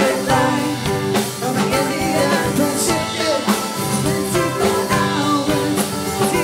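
Live band playing a song: a woman singing lead over mandolin, cello and drum kit.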